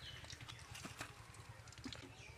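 Faint metal clicks from a cook's spatula and slotted skimmer knocking against a steel karahi and plate as fried potato cakes are lifted out, about three clicks in the second half, over a low steady rumble.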